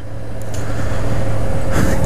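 Honda NC700X motorcycle's parallel-twin engine running steadily while riding, under wind noise on the helmet-mounted microphone, growing a little louder after the first half second.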